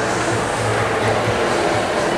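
Busy shopping-mall background: a steady mix of crowd chatter and background music in a large indoor space.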